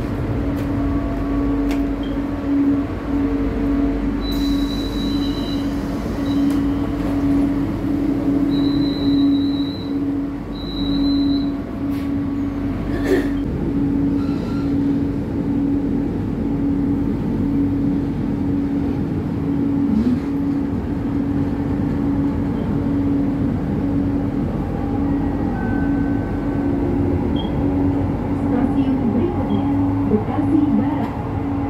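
LRT Jabodebek light-rail train running along the line, heard from inside the passenger car: a steady low hum over running noise. A thin high tone comes and goes twice in the first dozen seconds.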